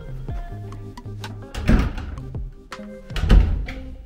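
Background music with steady notes, broken by two loud thumps about a second and a half apart as the coat closet door is opened.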